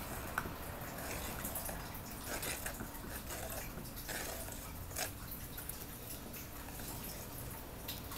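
Paintbrush dabbing and spreading Mod Podge over torn book-page scraps: faint wet, sticky brushing with a few light taps.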